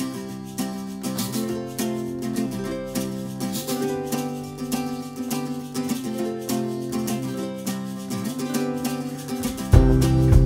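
Acoustic guitar playing a song's opening alone in a steady picked and strummed pattern. Just before the end a louder, deeper part comes in as more instruments join.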